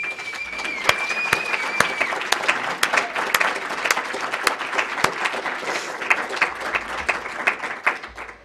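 Audience applauding, many hands clapping at once, dying away near the end. A thin, steady high tone sounds over the first two seconds.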